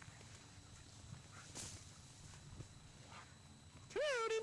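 Faint low rumble and soft rustling from a handheld camcorder moving quickly through brush, with a couple of brief crackles.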